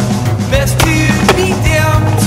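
Rock music soundtrack mixed with skateboarding sounds: wheels rolling on concrete and a few sharp knocks of the board.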